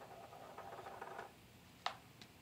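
Faint rustling and light tapping as a plastic soda bottle is picked up and handled on a table, then a single sharp click near the end.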